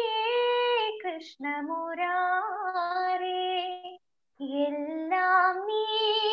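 A young woman singing solo over a video call, holding long notes that step from pitch to pitch with small wavering ornaments. She breaks off briefly about a second in and pauses for a breath just before the fifth second.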